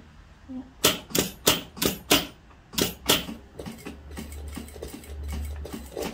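Industrial straight-stitch lockstitch sewing machine sewing a line at slow speed: a run of sharp mechanical clacks, about three or four a second, followed by a steady low motor hum for the last couple of seconds.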